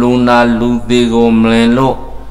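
An elderly Buddhist monk's voice reciting in a chanting tone through a microphone, holding long, steady notes with brief breaks, trailing off near the end.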